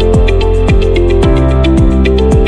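Electronic music with a steady beat and a synth melody over bass notes that slide downward about twice a second.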